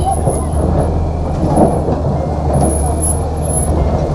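A steady low engine rumble with an even hum and a faint noisy haze, with faint voices under it.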